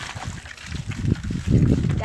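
Low rumbling noise from riding along a wet road, growing louder about halfway through.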